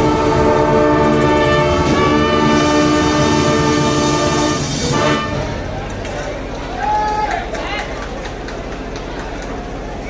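Marching band brass section (trumpets, trombones, sousaphones) holding one long loud chord that the players cut off together about five seconds in, ending the piece. After it there is the lower hum of an outdoor crowd with a few short calls.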